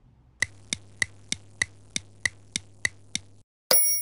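Clock-ticking sound effect, about ten even ticks at roughly three a second, standing for time passing while the hair dye sets. The ticking stops, and near the end a bright timer ding sounds and keeps ringing.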